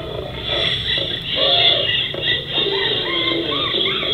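A recorded audio track for a children's animal song starting to play, with music and animal-like calls and cries; the sound is cut off above about 4 kHz.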